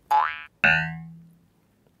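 Cartoon sound effects: a quick rising whistle-like glide, then a sudden ringing note that fades out over about a second.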